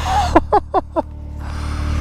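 A man laughing in four short, falling bursts within the first second, over the steady idle of a Can-Am Maverick X3 Turbo RR's turbocharged three-cylinder engine.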